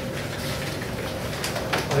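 Paper rustling and crinkling in the hands as a folded letter tied with ribbon is opened, in short bursts that get busier near the end, over a faint steady low hum.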